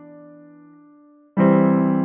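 Electronic keyboard in a piano voice: a chord of E, B and D fading away, then a C major chord (C, E, G, C) struck about one and a third seconds in and ringing on.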